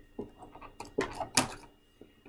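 Scissors snipping the scotch tape that holds a boxed doll to its cardboard backing, with packaging rustle: a few sharp clicks, the loudest about one and a half seconds in.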